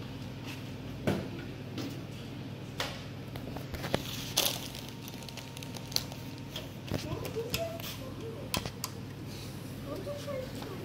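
Scattered short knocks and clicks from handling a disassembled LCD TV's metal backlight panel and its cable, over a steady low hum, with faint voices in the background.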